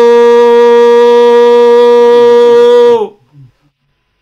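A shofar sounded in one long, steady blast that drops in pitch and cuts off about three seconds in.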